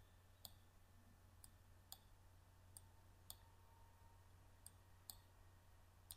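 Faint computer mouse button clicks, pressed and released in four pairs about half a second apart while objects are dragged, over a low steady hum.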